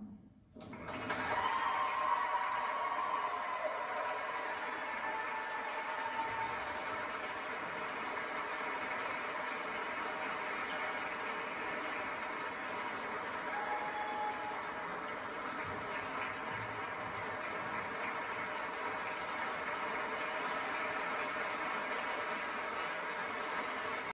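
Audience applauding, starting about a second in and continuing steadily.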